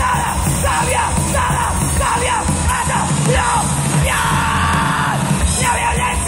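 Hardcore punk band playing live at full volume, with a yelled vocal over the guitars and drums.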